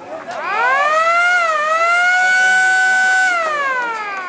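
A football ground's motor siren winds up in pitch over about a second and holds a steady wail with a brief dip. It winds down near the end. At an Australian rules match this siren signals the end of a quarter.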